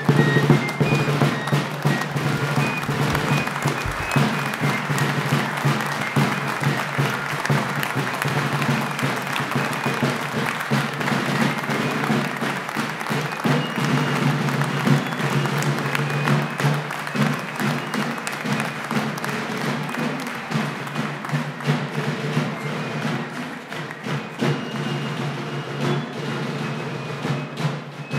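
A colonial-style fife and drum band playing a march, shrill high fife notes over drumming, with a crowd clapping along.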